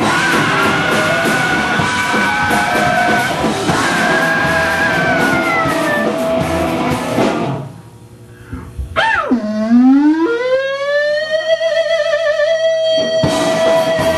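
Loud live rock band with distorted electric guitars, bass and drums. About seven and a half seconds in the band drops out and a single electric guitar note swoops sharply down and back up, then holds as a steady sustained tone. The full band comes back in about a second before the end.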